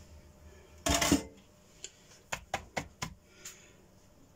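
Small stainless-steel seasoning cups clinking and knocking on a tiled counter as they are handled: one louder bump about a second in, then a quick run of about six light clinks.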